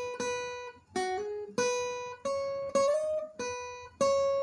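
Steel-string acoustic guitar played with a pick: a slow single-note melody of about six plucked notes, each ringing into the next. Twice a note steps up in pitch by a hammer-on or slide.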